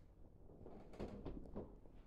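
Faint rustling and soft scratching of trouser fabric as a kitten shifts and paws on a lap, in a short patch about a second in.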